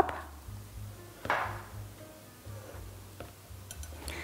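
Quiet background music with a pulsing low bass line. About a second in comes a brief soft swish.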